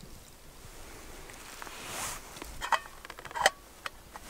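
Metal lid clinking onto a small metal camping pot, two sharp ringing clinks in the second half, after a soft rustle.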